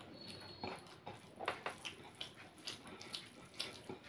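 Close-up eating sounds: wet smacks of chewing and the sticky squish of fingers mixing rice by hand. About a dozen small irregular clicks, the loudest about one and a half seconds in and again near the end.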